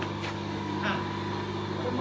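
Faint background chatter of several voices over a steady low mechanical hum.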